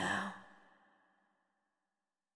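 The last sound of an electronic pop song: a short breathy burst right after the music cuts, fading out within about a second into silence.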